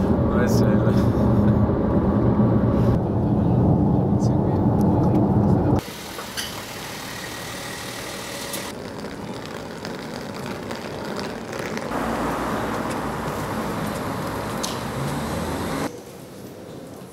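Road and engine noise inside a moving car's cabin, a steady low rumble. It cuts off abruptly about six seconds in, giving way to quieter outdoor background noise.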